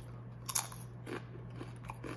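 A Doritos tortilla chip bitten and chewed: one sharp crunch about half a second in, then a couple of fainter chewing crunches.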